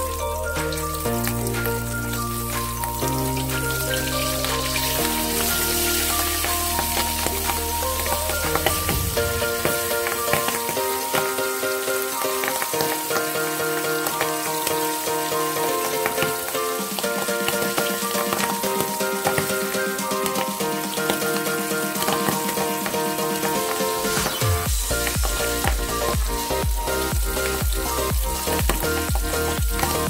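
Milkfish steaks frying in hot oil in a wok: a steady sizzle with continual fine crackles and spatters of oil. Background music with a bass line plays along throughout, its bass dropping out for a stretch in the middle.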